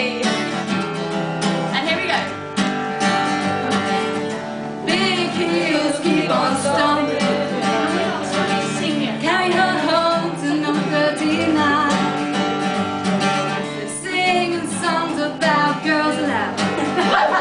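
Acoustic guitar strummed steadily, with voices singing and talking over it.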